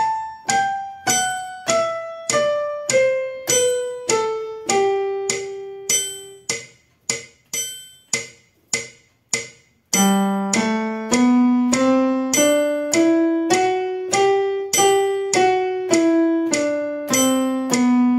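Electronic keyboard in a piano voice playing the G major scale one note at a time, about two notes a second. A descending right-hand run settles on a held note and is followed by a few short notes. About ten seconds in, a louder, lower left-hand octave climbs from G to G and starts back down.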